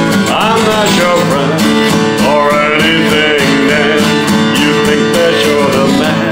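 Acoustic guitar strummed in an even rhythm while a man sings over it.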